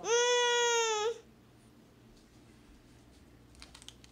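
A child's voice holding one high, drawn-out note for about a second, then stopping. A few faint clicks follow near the end.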